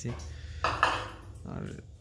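Metal ladle clinking against a bowl as batter is scooped, a couple of sharp clinks a little over half a second in, over oil frying in a wok.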